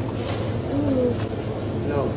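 Steady low background hum of shop equipment, with a brief soft murmured voice sound about half a second in.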